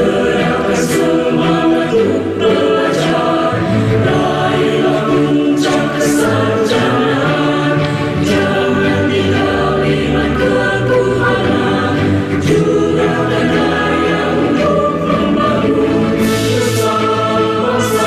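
Mixed choir of men and women singing a university march song in unison with musical accompaniment, in long held notes.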